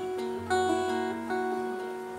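Acoustic guitar played on its own between sung lines, its chords ringing, with fresh notes struck about half a second in and again a little past a second.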